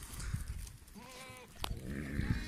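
A goat bleats once, a short call of about half a second near the middle, from a herd of castrated male goats. A single sharp click follows just after.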